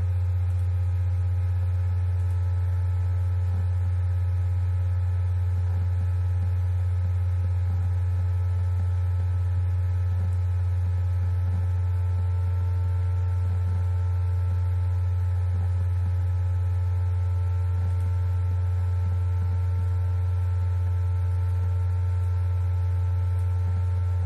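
Steady low hum with several fainter steady whining tones above it, unchanging throughout: a laptop's cooling fan picked up by the laptop's own built-in microphone.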